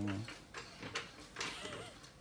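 Scattered light clicks and knocks, a few per second and irregular, after a man's voice trails off at the start.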